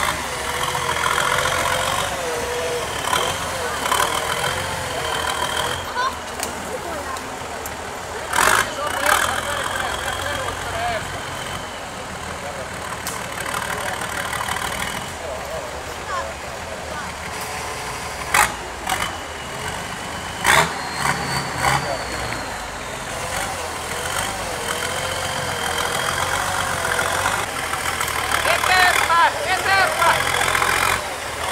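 Off-road 4x4's engine revving up and down under load as it crawls over rocks, with a few sharp knocks standing out about eight seconds in and again around eighteen and twenty-one seconds.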